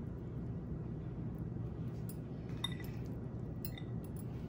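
A few light clinks of a metal spoon against a dish while deviled egg halves are being filled, the clearest about two-thirds of the way through with a short ring, over a steady low hum.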